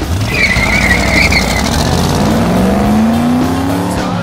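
Car tyres squealing for about a second, then the engine revving steadily higher as the car accelerates, over low road rumble.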